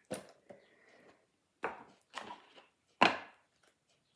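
A deck of reading cards being shuffled by hand: five short, sharp card slaps, the loudest about three seconds in.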